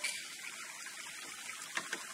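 Hot oil and fried tomato paste sizzling and bubbling in a pot as a thick blended vegetable purée is poured in, with a few faint pops near the end.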